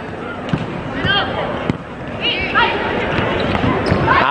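Volleyball being struck during an indoor rally: several sharp hits on the ball, the last a spike near the end, over steady arena crowd noise with short shouts.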